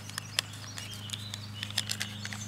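Faint bird calls with scattered small clicks and taps, over a steady low hum.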